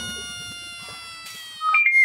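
Intro sound effects over a title card: a pitched tone with overtones holds and slowly slides down in pitch while fading. Near the end a short higher note sounds, then a quick downward-gliding whistle begins, like a cartoon slide whistle.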